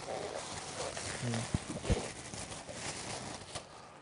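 Crinkling, rustling handling noise with many fine clicks, from food being handled on the counter, with two dull knocks around the middle and a brief low murmur just over a second in.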